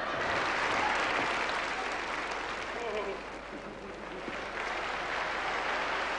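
Audience applauding, a steady clapping that eases briefly in the middle and picks up again.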